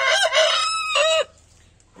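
A rooster crowing once, a single call that ends a little past a second in.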